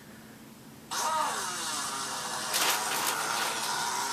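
A long, loud fart that starts suddenly about a second in with a falling pitch, then buzzes on steadily for about three seconds.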